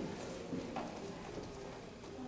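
Quiet room tone with one faint click about three quarters of a second in; the flutes are not yet sounding.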